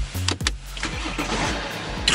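BMW 530's engine starting with a sharp onset and settling into a steady low idle, heard from inside the cabin.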